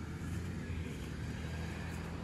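A car passing on the street, a steady low engine and tyre hum with no sudden sounds.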